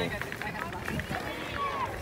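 Outdoor background in a pause of the nearby talk: faint distant voices over a low steady rumble.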